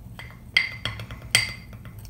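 A spoon stirring powder in a small glass bowl, clinking against the glass about five times, each clink with a short high ring. The loudest clinks come about half a second in and near a second and a half.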